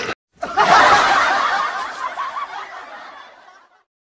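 Group laughter, many voices at once, starting about half a second in and fading away gradually over about three seconds. It is typical of a comedy laugh-track effect after a punchline.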